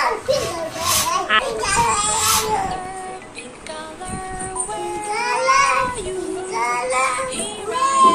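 A child singing and talking over a background music track. Near the start there are two short hissing whooshes, about a second apart, from strokes of a hand balloon pump inflating a rubber balloon.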